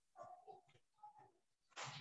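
Near silence, broken by a few faint, brief sounds.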